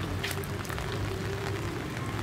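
Light rain pattering, with scattered drop ticks over a steady low hum.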